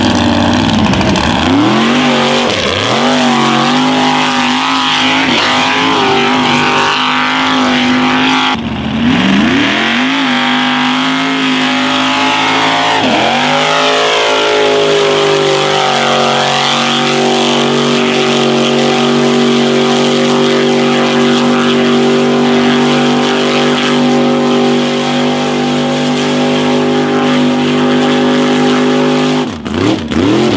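Ford Bronco mud truck's engine revving hard while it drives through deep mud, rising and falling in repeated surges for about the first half, then held high and steady for the second half.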